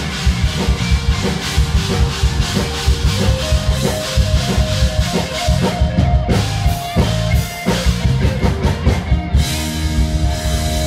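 Live band playing an upbeat song: a steady drum kit beat over heavy bass, with short repeated melody notes on top.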